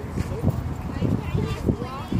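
People talking, over a run of irregular low thumps, about four a second.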